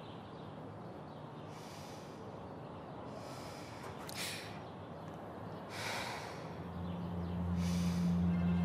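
A woman breathing audibly, with about five slow breaths a second or two apart. Low sustained music swells in near the end.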